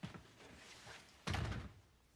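A door being shut, closing with a solid thud just over a second in.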